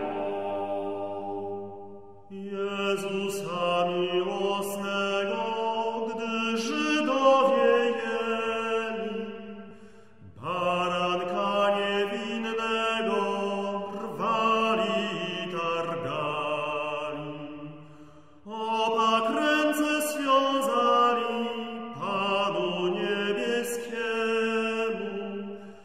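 Early-music vocal ensemble singing a 15th-century Polish hymn in a chant-like style, in three sung phrases with short breaks between them, about two, ten and eighteen seconds in.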